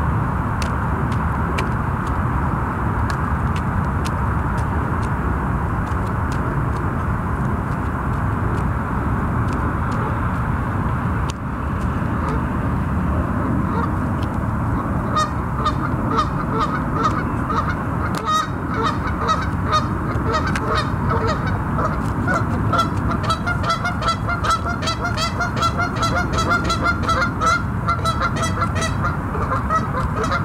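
A flock of geese honking, the calls sparse at first and then coming thick and fast, several a second, from about halfway on. Under them runs a steady low rushing noise.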